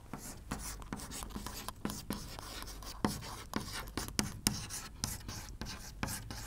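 Chalk writing on a chalkboard: a fast, irregular run of short taps and scrapes as a word is written out stroke by stroke.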